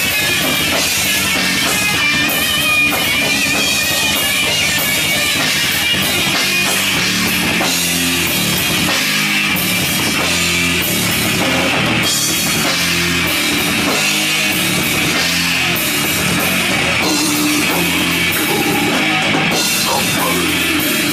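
Death metal band playing live: distorted electric guitars, bass and a fast drum kit, steady and loud with no break.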